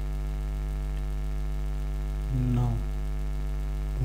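Steady electrical mains hum in the recording, with a stack of evenly spaced overtones.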